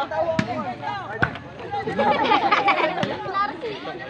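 Three sharp thuds of a ball being struck during play, about half a second, a second and three seconds in, over the steady chatter and shouts of a crowd of spectators.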